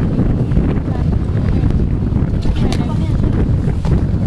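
Wind buffeting a camcorder microphone: a loud, steady, fluttering low rumble.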